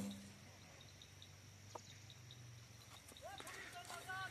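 Mostly near silence. Just as it begins, the last of a recurve bow shot dies away, a short low hum fading within half a second. A few faint rising-and-falling pitched calls come in near the end.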